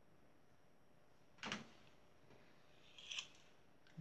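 Near silence: room tone, broken by a brief soft click about a second and a half in and a short faint hiss near three seconds.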